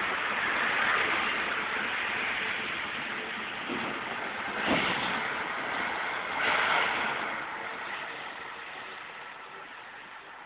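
Heavy snow-clearing trucks driving past on a snowy street: a hissing rush of engine and tyre noise that swells as one passes close about six and a half seconds in, then fades steadily as they move off. A short knock a little before the near pass.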